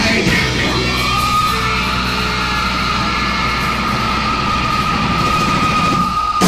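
Live rock band playing loud, heavy music, with a single high note sustained from about a second in over a steady low drone.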